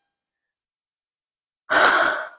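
Dead silence, then about a second and a half in, one loud, breathy sigh from a man.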